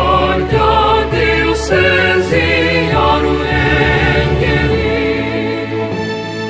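A school anthem sung by a choir, the voices held with vibrato over an instrumental backing with a steady bass line.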